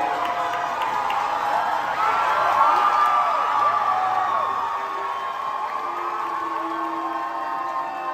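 Concert crowd cheering, with many whoops and shouts rising and falling over the noise, as the show opens. A steady held note comes in about six seconds in.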